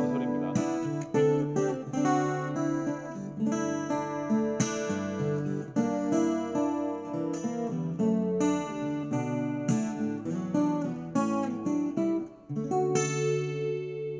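Yamaha CSF-TA TransAcoustic parlor guitar played fingerstyle through its pickup into an AER acoustic amp, with the guitar's own built-in chorus and hall reverb switched on. Plucked melody notes ring on and overlap in the reverb tail, ending on a sustained chord after a short break about twelve and a half seconds in.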